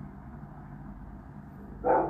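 A truck engine runs steadily at idle with a low rumble. Near the end a dog barks once, short and loud.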